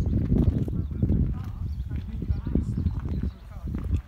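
Irregular knocking footsteps with wind rumbling on the microphone and faint voices in the background.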